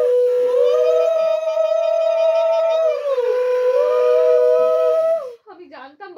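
Women ululating (Bengali ulu), the auspicious call of a Hindu wedding rite: long, high, held calls in two overlapping voices at different pitches, each lasting a second or two. The calls stop about five seconds in, and talk follows.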